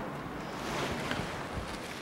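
Steady background rumble and hiss of room noise, with no distinct event.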